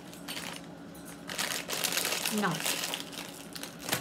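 Plastic snack bag crinkling as it is handled and set down, a rustling that starts about a second in and lasts a couple of seconds.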